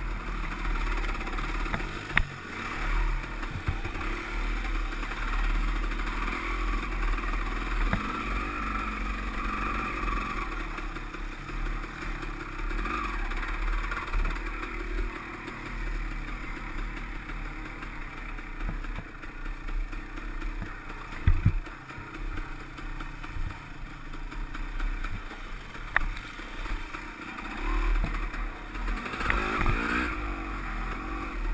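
KTM dirt bike engine running on a trail ride, its revs rising and falling with the throttle, with a few sharp knocks and clatter from the bike over the rough ground.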